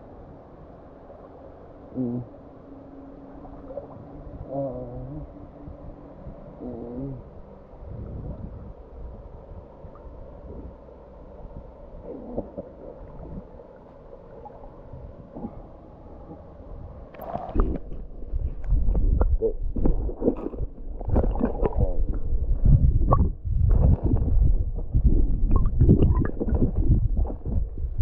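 Water gurgling and sloshing against a waterproof camera held at the river's surface. There are a few faint gurgles at first, then from about two-thirds of the way in a dense run of loud, choppy splashes and rumbles as the water churns around the housing.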